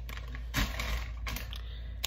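Plastic grocery packaging crinkling and rustling as it is handled, in irregular bursts with stronger crackles about half a second and a second and a half in.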